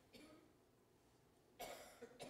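Near silence from a man's breathing at a podium microphone: a faint breath just after the start and a louder, short intake of breath near the end.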